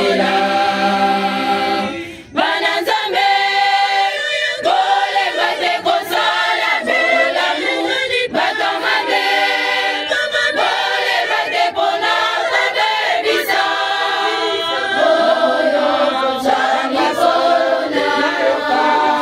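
A choir of young women singing a cappella, many unaccompanied voices in harmony, with a brief pause between phrases about two seconds in.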